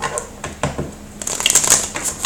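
Tarot cards being shuffled by hand: a few soft card clicks, then a quick run of crisp card flicks in the second half.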